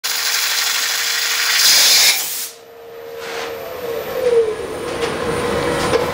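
Compressed air hissing loudly through a gun drill's air passage, cutting off abruptly after about two and a half seconds as the valve closes. A quieter hiss with a steady hum then slowly builds again.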